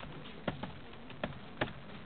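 Typing on a computer keyboard: a handful of faint, irregular keystroke clicks.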